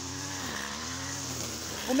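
A small engine running steadily, its pitch dipping and rising slightly.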